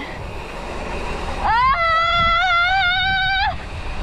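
A woman screaming: one long scream of about two seconds that starts about a second and a half in, rises at the onset and is then held with a slight waver. Under it is the steady rush of wind and tyres on the concrete descent.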